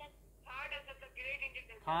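A person's voice speaking briefly, thin and cut off in the highs as if heard over a phone or online-call line, likely a student answering the teacher's question.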